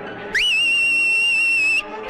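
A loud whistle: one note sweeps up and is held steady for about a second and a half, then cuts off.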